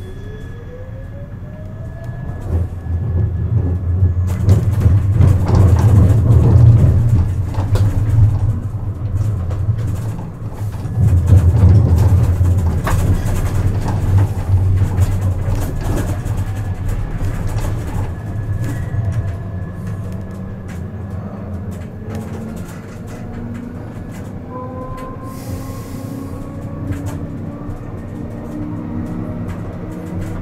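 Siemens Avenio low-floor tram heard from the driver's cab. Its electric traction drive whines up in pitch as it pulls away. Then the heavy rumble of the wheels on the rails, loudest twice in the first half, gives way to a steadier run with the drive's whine rising again as it accelerates near the end.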